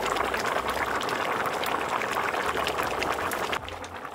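Rice and water boiling hard in a large aluminium pot, a dense bubbling and crackling that cuts off shortly before the end.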